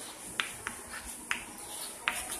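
Short sharp clicks of chalk tapping on a blackboard while writing, three of them at uneven intervals, over a steady high hiss.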